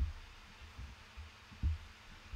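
Two soft, low thumps over quiet room tone, one at the start and a stronger one about a second and a half in.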